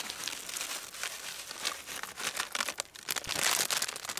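Grain being shaken out of a crinkling feed bag and pattering onto dry leaves and needles. It is a dense crackle of small clicks that is loudest about three and a half seconds in.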